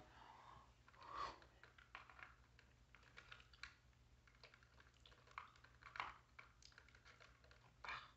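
Faint, scattered plastic clicks and scrapes of a ceiling smoke alarm being twisted and pried off its mounting base, with a few slightly louder clicks about a second in and near six seconds.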